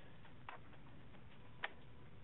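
Two faint clicks about a second apart over a steady low hiss: a computer mouse clicked to advance the lesson slide.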